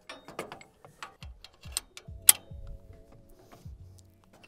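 Scattered metal clicks and knocks as the welded base end of a hydraulic top link is slid into a tractor's top-link bracket. One sharp metallic click about two and a quarter seconds in is the loudest.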